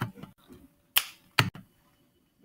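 Sharp clicks and knocks of plates, bowls and utensils being handled: a few short, separate strikes, the loudest two close together about a second in.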